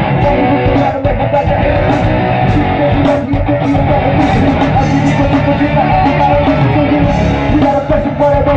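Rock band playing live: electric guitars over a steady drum beat.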